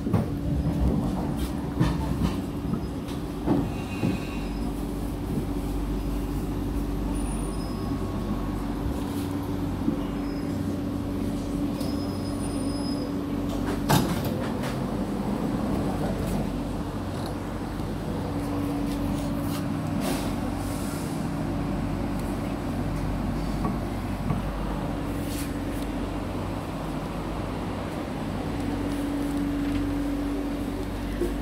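Interior sound of a Kawasaki–CRRC Sifang C151B metro car: a steady low hum and drone with a constant tone that drops out now and then. One sharp knock comes about 14 seconds in.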